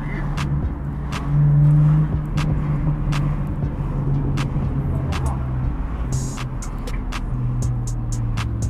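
Engine and road noise heard from inside a moving car: a steady low drone.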